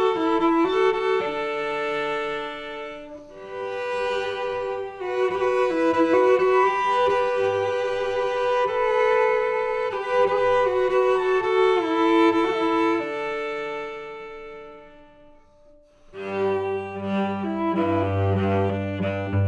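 Solo cello playing a slow, lyrical Celtic-style air in long bowed notes. Near the end the phrase dies away almost to silence, then the cello comes back in on lower, fuller notes.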